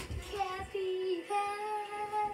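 A child's voice singing without words: a short held note, then a longer steady note through the second half.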